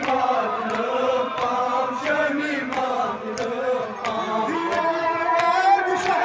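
Male voice chanting a Kashmiri noha (lament) through a microphone and loudspeaker, with other men's voices joining in. Regular chest-beating strikes (matam) fall about every two-thirds of a second under the chant.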